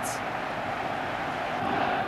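Steady, continuous noise of a large stadium crowd at a football match.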